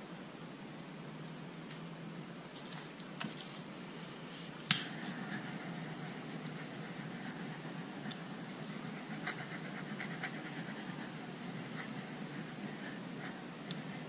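Handheld butane torch clicked on about five seconds in, then a steady flame hiss as it is played over wet poured acrylic paint on a coaster.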